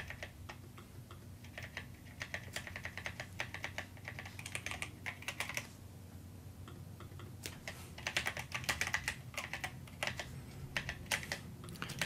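Computer keyboard typing in quick runs of keystrokes, with a lull of about a second and a half in the middle.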